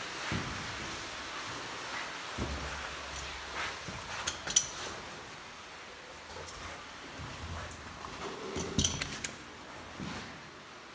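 Movement sounds from someone making their way through a cave: scattered light clicks and clinks, the sharpest about four and a half seconds in and another cluster near the end, over low rumbling handling noise.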